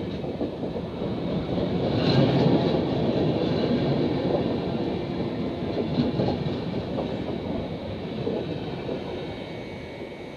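Passenger coaches of a departing express train rolling past, steady wheel and rail noise with occasional clicks over rail joints. It is loudest a couple of seconds in and fades steadily as the last coach passes near the end.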